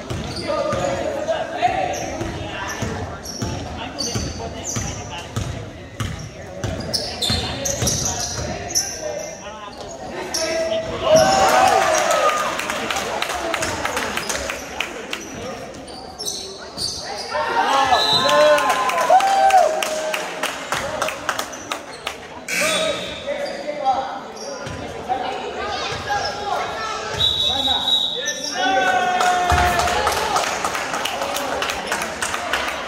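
Basketball dribbled on a hardwood gym floor during a game, the bounces echoing in a large gym. Near the end, a referee's whistle sounds one steady, high note for about a second.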